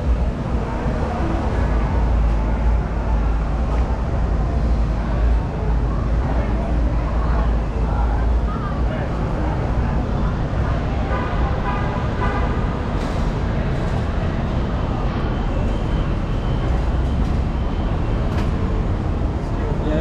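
City street ambience: a steady low rumble of traffic, with people's voices in the background.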